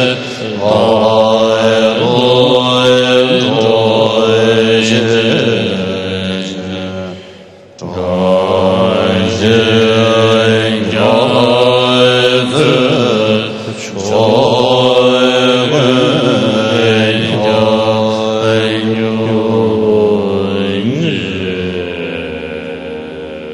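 A large assembly of Tibetan Buddhist monastics chanting a prayer in unison, a slow, melodic chant whose pitch rises and falls. It breaks off briefly about seven and a half seconds in, between verses, then resumes.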